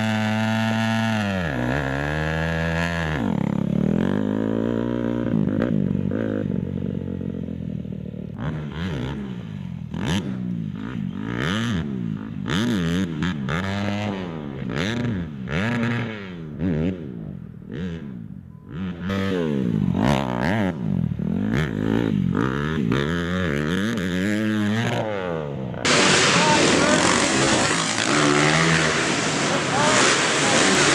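Motocross dirt bike engines revving, their pitch climbing and dropping again and again as the bikes accelerate and shift through the gears. Near the end the sound changes abruptly to a louder, hissier engine sound.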